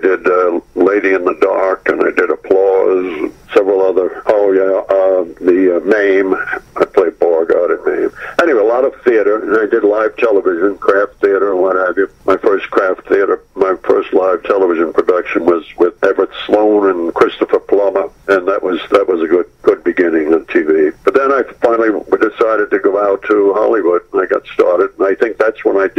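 Speech only: a man talking continuously over a telephone line, the sound narrow and thin.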